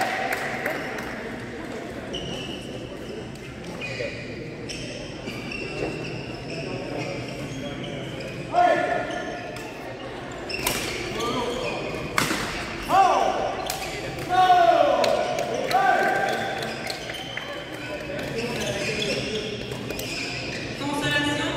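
Badminton rally in an echoing sports hall: sharp, irregular racket hits on the shuttlecock, and sneakers squeaking on the court floor in several short squeals, most of them in the second half.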